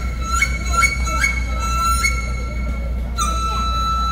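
Transverse bamboo flute (dizi) playing a melody through the stage sound system, its clear tone flicking up to a higher note and back several times, then holding one long note near the end, over a steady low hum.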